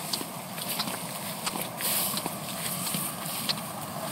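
Footsteps on a dirt trail through tall grass, uneven scuffs and light clicks, with rustling as the walker moves through the grass.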